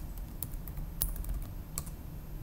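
Typing on a computer keyboard: a handful of irregular key clicks as a short command is entered, the loudest about halfway through, over a low steady hum.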